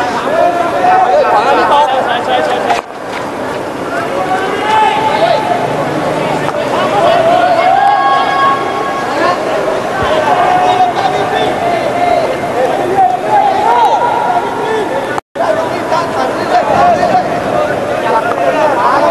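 Many overlapping voices shouting and chattering throughout, the sound of spectators and players calling out. The sound dips briefly about three seconds in and cuts out completely for a moment about fifteen seconds in.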